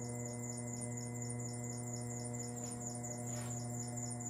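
A steady electrical hum with a stack of overtones, unchanging throughout, with a faint brief scrape about three and a half seconds in.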